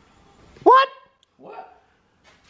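A single short, loud yelp about two-thirds of a second in, sweeping sharply up in pitch at its start, followed by a fainter brief sound.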